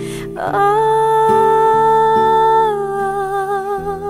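A singer draws a short breath, then holds one long sung note over acoustic guitar chords; after about two and a half seconds the voice drops slightly to a wavering note.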